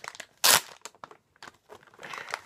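Crinkling and rustling of something being handled, with scattered small clicks and one short, loud crinkle about half a second in.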